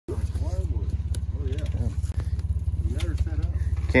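A motor vehicle's engine idling close by: a steady low rumble with rapid, even pulses. Faint voices talk over it.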